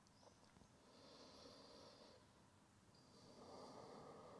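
Faint, slow deep breaths through the nose over near silence: one about a second in and another starting near the end.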